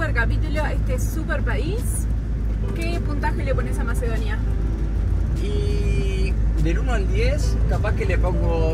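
Two people talking inside the cab of a moving motorhome, over its steady low engine and road rumble.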